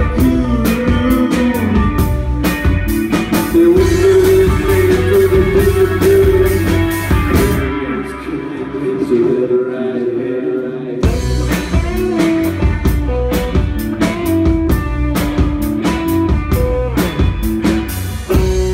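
Live rock band, electric guitars, bass guitar and drums, playing loud and bluesy. About eight seconds in the drums and bass drop out, leaving a thinner passage, and the full band comes back in around eleven seconds.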